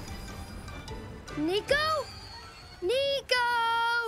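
Cartoon background music, then a single high pitched call that slides up and falls away twice. The call is then held steady on one note and ends in a falling slide.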